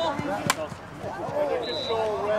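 A single sharp crack of a lacrosse stick striking, about half a second in, over shouting voices from the field.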